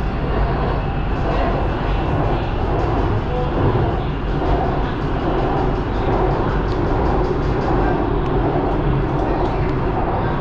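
A BTS Skytrain car running at speed between stations on the elevated line, heard from inside the car: a steady low rumble of wheels and running gear with a hiss over it, holding even throughout.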